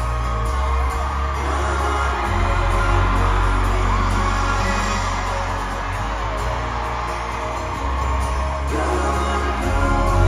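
Live pop music heard from the audience in a large arena: acoustic guitars over a steady bass, with singing.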